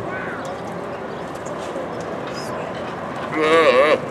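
A roped calf bawls once near the end, a short wavering call, as it is held down and tied, over a steady background hiss.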